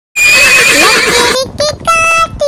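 A horse neighing: one loud, quavering whinny lasting about a second. About a second and a half in, a sung voice starts.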